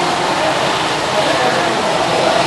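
Rotax Max Junior two-stroke kart engines whining as a pack of karts laps the circuit, their faint, wavering pitch carried over a steady rush of noise.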